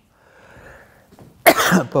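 A man coughs once, loudly and abruptly, about one and a half seconds in.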